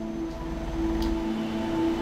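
A keyboard holding a soft sustained chord under a pause in the preaching, with a low rumble beneath and a faint click about a second in.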